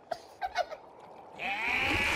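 Cartoon vocal sound effects: a few short squeaky blips, then about a second and a half in a loud wavering cry from one of the animated characters.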